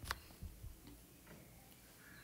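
Faint taps of a stylus on a tablet's glass screen while handwriting: one sharper tap just after the start, then a couple of softer ticks, over near silence.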